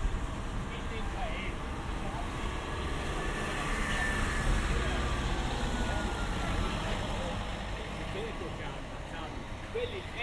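Small cars driving slowly past at close range, one after another, their engines and tyres giving a steady rumble, with faint voices of people in the street.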